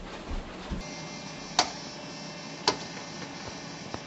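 Two sharp clicks about a second apart over steady, low room noise.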